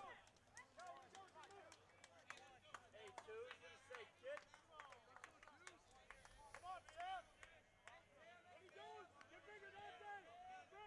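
Faint, distant voices of players and fans chattering and calling out around a baseball field, with scattered light clicks.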